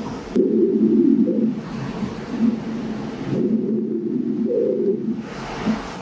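Pulsed-wave Doppler audio from a GE LOGIQ E9 ultrasound scanner sampling a renal arcuate artery at the kidney's mid pole: a low whooshing flow sound that swells and fades with the pulse. It starts about a third of a second in.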